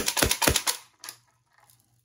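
HPA Nerf blaster, run at 100 psi through a solenoid valve and a pneumatic cylinder pusher, firing full-auto: a rapid run of sharp pneumatic clacks, about ten a second, lasting under a second. One faint click follows about a second in.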